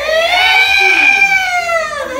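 A person's long, high-pitched scream that rises and then slowly falls in pitch, ending at about two seconds.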